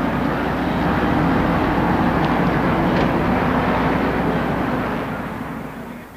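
A field of NASCAR Winston Cup stock cars with restrictor-plated V8 engines running on the track: a loud, steady engine drone that fades away near the end.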